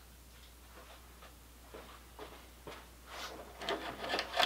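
Faint, scattered clicks and taps of someone moving about and handling small objects in a workshop, getting busier in the last second.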